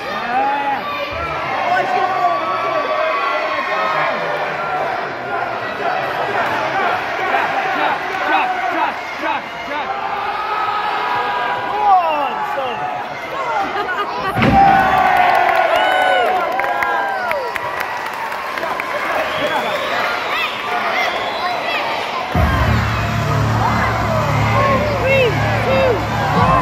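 Wrestling crowd at ringside shouting and cheering. A heavy thud about halfway through, as a wrestler hits the ring mat. Music with a heavy beat starts loudly near the end.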